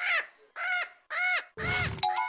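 Parrot squawking: four short calls about half a second apart, each rising and falling in pitch.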